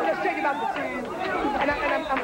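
Several voices talking and calling out at once, overlapping one another.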